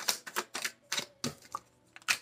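A deck of tarot cards being shuffled by hand: an irregular run of short, quick card clicks.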